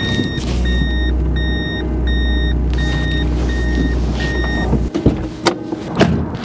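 Reversing beeper on a Toyota Land Cruiser 70 Series sounding seven even beeps as it backs up, over the low drone of its diesel engine. The engine drone cuts off suddenly a little before the end, followed by a click.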